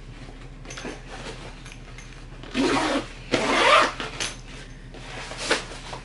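Zipper on a Jack Wolfskin Freeman 65 backpack's stowable harness cover being pulled shut in two strokes, about two and a half and three and a half seconds in, with a shorter rasp near the end and fabric rustling between.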